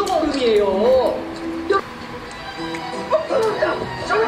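Korean TV drama audio playing from a computer: a voice with strongly swooping, drawn-out pitch over steady background music, quieter in the middle and picking up again near the end.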